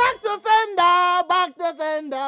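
A woman's high voice singing a chant-like melody in a string of short held notes that step up and down.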